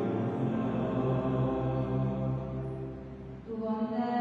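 Chant-like church music with long held notes. The notes change about three and a half seconds in.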